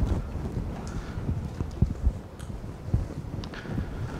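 Soft footsteps and clothing rubbing picked up by a clip-on lapel microphone: irregular low thumps with a few faint clicks.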